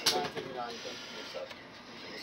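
Faint speech from a television in the room, which thins out after about a second to a low background hiss.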